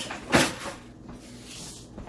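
A single sharp knock about a third of a second in, with a short ring after it, then a faint hiss.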